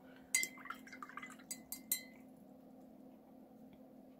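Watercolour brush being rinsed in a glass water jar: a few sharp clinks of the brush against the glass, one with a brief ring, and a little water swishing, all in the first two seconds, then quiet room tone.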